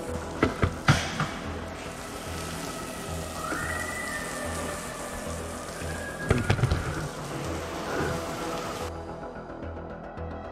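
Water from a garden hose spray nozzle hissing as it hits a car's bodywork, over electronic background music with a steady beat. The spray hiss stops abruptly near the end, and there are a few sharp knocks near the start and again about six and a half seconds in.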